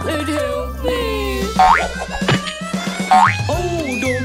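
Bouncy children's cartoon music with two springy cartoon boing sound effects, each a quick rising sweep in pitch, about a second and a half in and again near three seconds.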